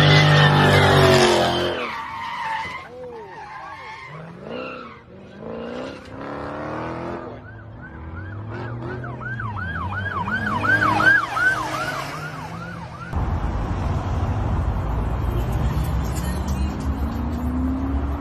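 A car engine revving loudly, then a run of rising-and-falling tyre squeals, about three a second, for several seconds. After a sudden change about thirteen seconds in, a steady low road-traffic rumble.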